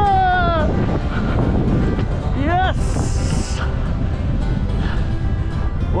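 Wind buffeting a helmet camera's microphone during a gallop: a steady low rumble. A drawn-out shout trails off near the start, and a short rising call comes about two and a half seconds in.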